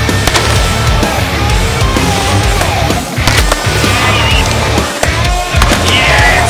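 Skateboard wheels rolling and carving through a concrete bowl, heard under a loud rock music track.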